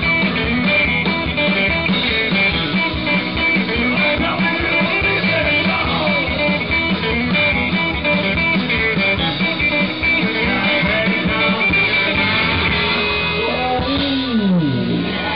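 Live rock band playing a song, with strummed acoustic guitar, electric guitar and drums, heard through the stage PA.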